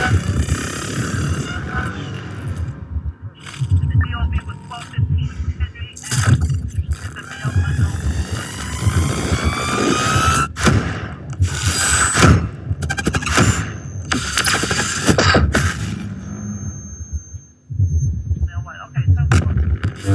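Crowd voices mixed with the light show's electronic soundtrack: sweeping tones and a run of loud booming hits around the middle, with a thin high steady tone later on.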